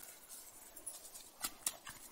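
Footsteps through forest undergrowth with rustling, and a quick run of sharp twig snaps about a second and a half in.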